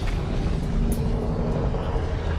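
Deep, steady rumble of molten lava and fire, with a few faint crackles.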